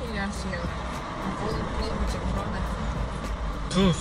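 Steady low rumble and hiss inside a stopped car's cabin, between bits of conversation at the start and near the end.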